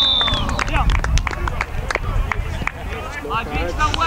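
Footballers shouting and cheering as they celebrate a goal, with sharp claps and slaps and wind rumble on the microphone. A long whistle blast, most likely the referee's, tails off just after it begins.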